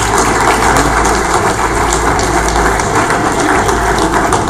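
Crowd applauding: many hands clapping steadily.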